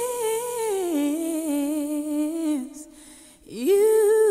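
A woman's voice humming a wordless tune: a held note that steps down to a lower one and stops after about two and a half seconds, then after a short pause a new note swoops up near the end.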